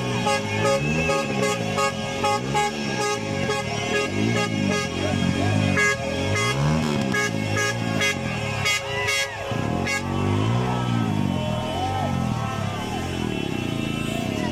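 Lorry air horns held in a long, steady blast over a rhythmic crowd noise; the horn cuts off abruptly about ten seconds in, leaving the crowd.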